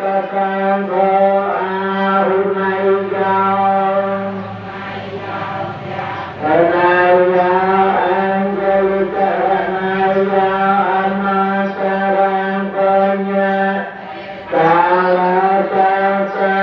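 Buddhist chanting: one voice chanting long, drawn-out phrases over a steady low drone. A new phrase swoops up into place about six seconds in and again near the end.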